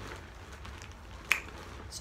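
Faint rustling of someone moving close to the microphone, with one sharp click a little past halfway.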